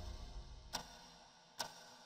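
A slow, even ticking: two sharp ticks a little under a second apart, as the tail of the music fades away at the start.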